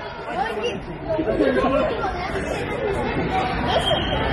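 Overlapping voices of several people talking and calling out at once in a sports hall.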